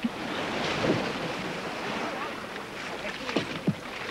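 Surf washing onto a beach, with wind, as an even rushing noise. Faint, distant men's voices call out a few times, once about a second in and twice near the end.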